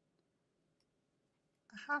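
Near silence with faint room tone, then a woman begins speaking near the end.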